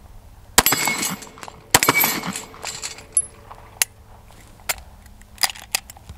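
Two pistol shots from an FN 509 Tactical 9 mm handgun, a little over a second apart, each followed by a short echo. A few faint clicks follow.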